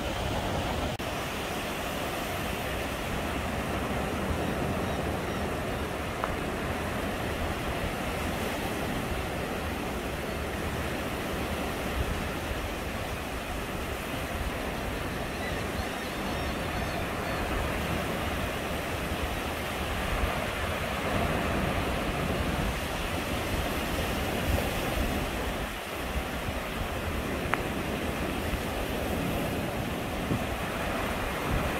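Gentle surf on a sandy beach: small waves breaking and washing up the shore in a steady wash, with wind buffeting the microphone.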